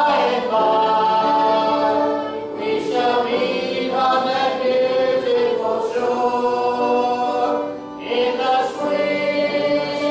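Church congregation singing a hymn together in long, held notes, with short breaks between phrases.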